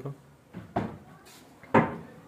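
Lift-up upper kitchen cabinet doors on gas struts being pushed shut: two knocks as they close, a softer one just under a second in and a louder one near the end.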